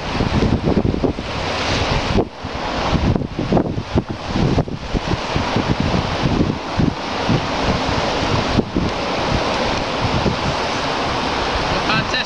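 Wind buffeting the microphone: a steady rushing noise with gusty low rumbles that dips briefly a few times.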